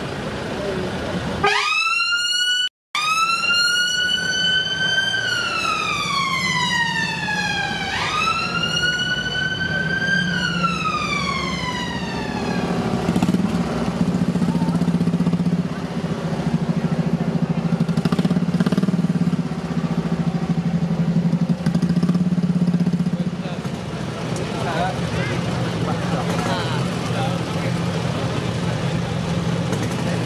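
A siren wailing, its pitch sweeping up and down twice over about ten seconds, with a brief cut-out near the start. After it fades comes a steady low hum of vehicle engines running in slow traffic.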